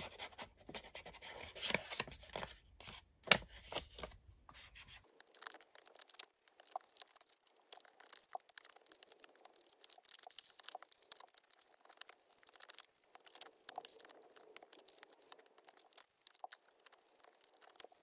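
Ink blending brush dabbed on an ink pad and rubbed along the edges of paper envelope pockets, with paper being handled: a faint scratchy rustling with many small taps. About five seconds in the sound turns thinner and lighter.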